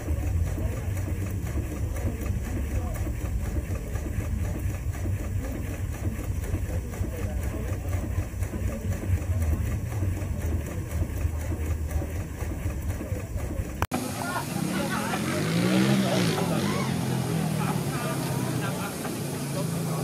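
1907 Hofherr & Schranz portable steam engine running, a steady low rumble. About two-thirds of the way through, the sound cuts abruptly to people talking over the running machinery.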